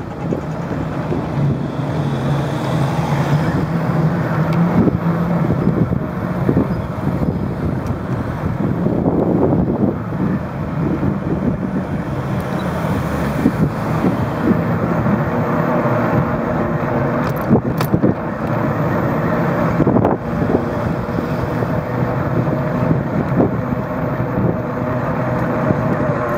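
Ride noise of a moving bicycle: a steady hum of the tyres rolling on asphalt mixed with wind on the microphone, with a few sharp knocks and rattles from bumps in the road.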